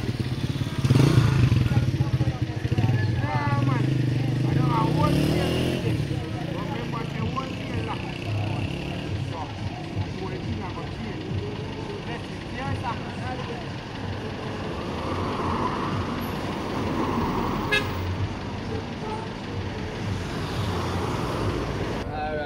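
Street traffic. A vehicle passes close by in the first few seconds, loudest about a second in, with its engine note rising, then a steadier background of road noise and scattered voices.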